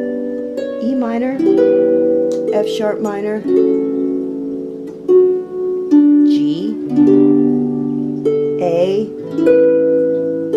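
Harp strummed in held chords moving through G, F-sharp minor and A in D major, the notes ringing on over one another. A high voice sings along several times in short sliding, wavering calls.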